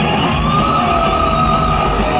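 Live heavy metal band playing through an arena PA, with a lead electric guitar bending up to one long, held high note over the rhythm guitar and drums. The sound is the dull, top-cut sound of a phone recording from the crowd.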